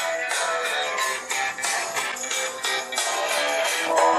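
Music playing from a smartphone's small built-in speaker, with almost no bass.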